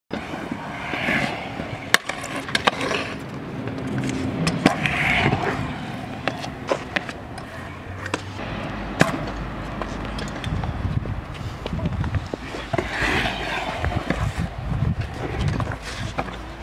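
Stunt scooter wheels rolling over concrete skatepark ramps, with repeated sharp clacks as the scooter lands and its deck and wheels strike the concrete.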